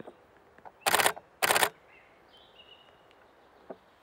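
DSLR camera shutter firing in two short bursts of rapid clicks, about half a second apart, a little after the first second.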